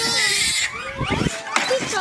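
A troop of Japanese macaques calling: many overlapping calls that rise and fall in pitch.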